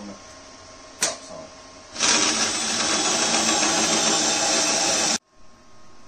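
A sharp click about a second in, then a power drill running a hole saw in a tube notcher, cutting a fish-mouth into the end of a tube. It runs loud and steady for about three seconds and then stops abruptly.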